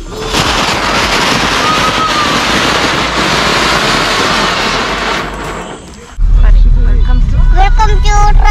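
A loud, steady rushing noise for about five seconds, then a sudden cut to a deep, steady rumble, with a child starting to sing near the end.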